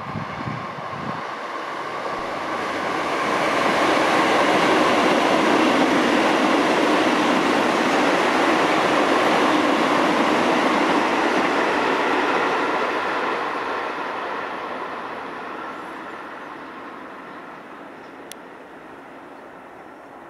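Electric commuter train passing by, its running noise swelling over the first few seconds, loudest for several seconds in the middle, then fading away.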